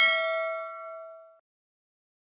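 A bright notification-bell ding, several ringing tones together, fading out within about a second and a half.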